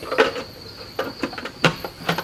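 Plastic lid being fitted onto a food processor bowl: a series of sharp plastic clicks and knocks. A steady high insect chirr carries on underneath.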